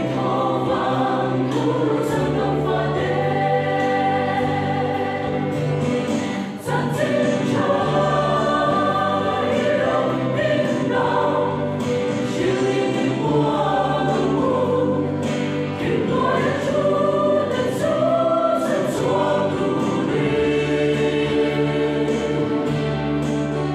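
Mixed choir of men's and women's voices singing, with a brief break between phrases about six and a half seconds in.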